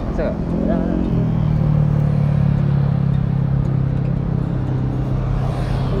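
Electric hair clipper buzzing steadily for about four seconds while it is held to the face, with road traffic behind.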